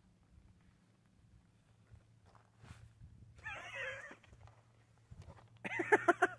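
An animal's brief high, wavering whine, about three and a half seconds in, lasting under a second.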